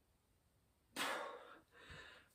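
Dead silence, then about a second in a single short breath, a sharp exhale or gasp, fading quickly, with a faint trace of breath or movement near the end.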